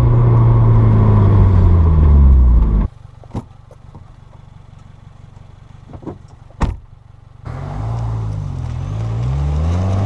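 Turbocharged 2.0-litre flat-four engine and aftermarket cat-back exhaust of a 2015 Subaru WRX, its pitch falling as the car slows for about three seconds. The sound then drops away suddenly to a quiet stretch with a few sharp knocks. About seven and a half seconds in, the engine note returns, dipping and then rising in pitch as the car accelerates.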